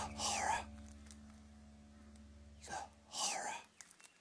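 A voice whispering twice, two short breathy phrases about two and a half seconds apart, over a low steady musical drone that fades away near the end.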